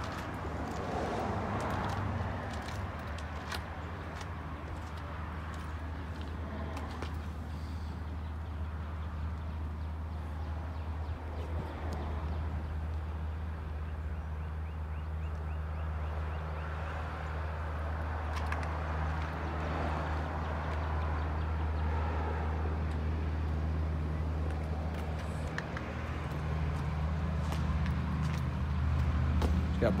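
A vehicle engine idling steadily, a low even hum that holds through the whole stretch.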